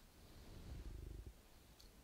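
Near silence: room tone, with a faint low rumble in the first half.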